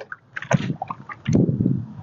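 Vinaigrette glugging out of a bottle and splashing onto chopped onions and peppers, in uneven spurts that get louder in the second half.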